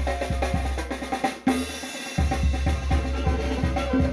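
Live tamborazo band playing dance music: bass drum and snare keep a steady beat under sustained brass. About a second and a half in, the low end drops out briefly in a short drum break before the full band comes back in.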